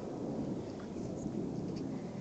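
Wind rumbling on the microphone, a steady low noise with no clear events in it.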